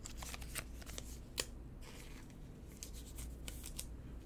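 Faint handling of a thick framed trading card and its packaging: a run of small clicks and rustles, with one sharper tick about one and a half seconds in.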